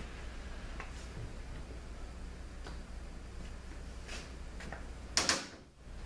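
A few light clicks and knocks of parts and hand tools being handled on a steel workbench over a steady low hum, with a louder sharp clack about five seconds in.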